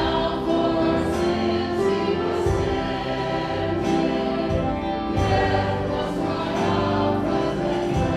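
Church worship group singing together with a live band of piano, guitar, bass and drum kit, with regular drum and cymbal beats.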